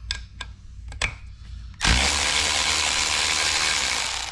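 Cordless power tool spinning out a T30 Torx bolt holding the oil cooler to the oil filter housing, running steadily for about two seconds after a few light clicks of the tool going onto the bolt.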